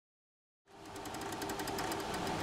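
A machine running with a rapid, dense clicking and clatter, fading in from silence about two-thirds of a second in and growing louder.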